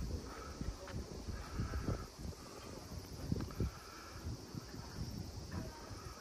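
Outdoor ambience with wind buffeting the microphone in uneven low rumbles.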